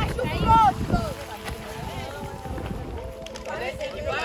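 Children shouting and squealing excitedly as a child slides down a wet plastic banner. The shouts are loudest in the first second and come again near the end, over a low rumbling noise in the first second.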